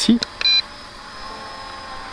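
One short electronic beep from the MJX Bugs 5W drone's radio transmitter as its photo button is pressed, confirming the shot, over a faint steady hum.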